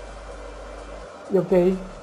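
Steady background hiss with a low hum. A man says a brief "y ok" over it about a second in.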